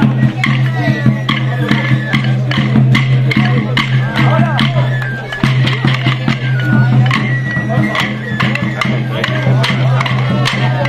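Traditional pipe-and-tabor music, a high melody over a drum beat, accompanying a stick dance, with the dancers' wooden sticks clacking together in rhythm and crowd voices underneath.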